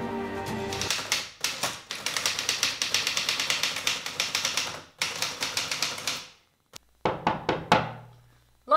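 Manual typewriter keys struck in rapid runs of clacks for about five seconds, a short pause, then a few more strikes near the end. A held music chord fades out about a second in, as the typing starts.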